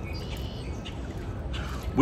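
Birds chirping in the background, a few short high calls in the first part, over a steady low outdoor background noise.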